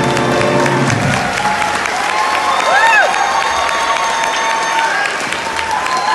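Audience applauding and cheering as a school jazz band's last held brass chord dies away in the first second. A single rising-and-falling whoop cuts through the applause about three seconds in.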